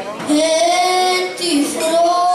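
Cretan lyra bowing a melody in long held notes that step between pitches, with a brief break about a second and a half in.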